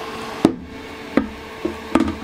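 Knocks and clacks of the Elegoo Mars's red plastic UV cover being handled and lowered over the printer: one sharp knock about half a second in, then lighter taps. A steady hum from a fume extractor runs underneath.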